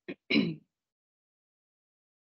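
A person clearing their throat: two short rasping bursts in quick succession, the second louder.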